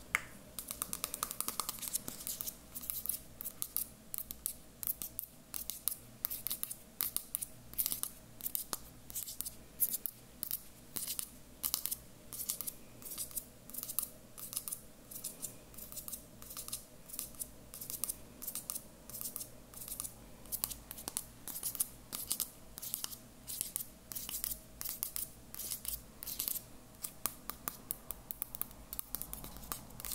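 A lit candle in a small metal tin crackling close up: a quick, irregular run of small sharp pops that goes on steadily.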